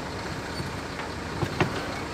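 Steady road and engine noise heard from inside a moving vehicle, with a few short knocks in the second half.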